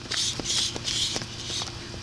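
A boxer shadow boxing in gloves, throwing punches: three quick hissing bursts in the first second, then fainter scattered clicks.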